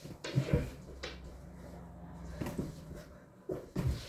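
Handling noise: about half a dozen soft knocks and bumps, unevenly spaced, as things are picked up and moved about at floor level, over a low hum in the first half.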